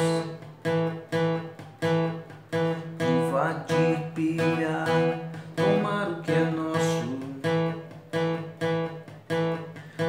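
Steel-string acoustic guitar strummed in a steady rock rhythm, about two strokes a second, playing two-note power chords on the 4th and 3rd strings that move between E and A.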